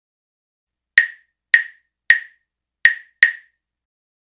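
Claves playing the 3-2 son clave pattern once through: five sharp, dry wooden clicks, three evenly spaced and then two, the last two close together. It is the rhythmic key pattern of salsa.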